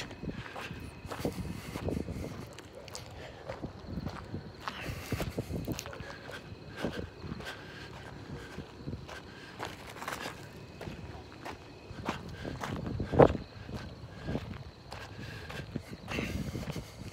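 Footsteps on pavement as a person walks along, a steady run of soft irregular steps with one louder thump about thirteen seconds in.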